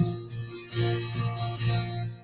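Acoustic guitar strummed in a short instrumental gap between sung lines of a folk song, three chords about three quarters of a second apart, each left ringing.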